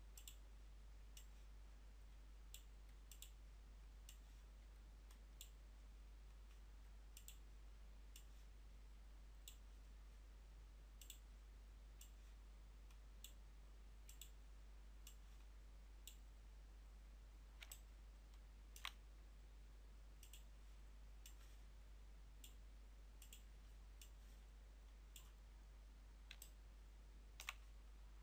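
Computer mouse buttons clicking, single and double clicks at irregular intervals about once a second, over a faint steady low hum.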